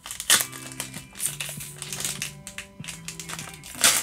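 Foil booster pack wrapper crinkling as it is pulled open by hand, with a few sharp crackles and a louder tear just before the end.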